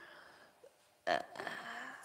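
A man's short, low chuckle close to the microphone about a second in: a sudden breathy onset followed by a brief voiced sound.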